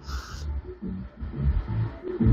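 Karaoke background music playing quietly under the talk, with a low beat. A brief hiss at the very start.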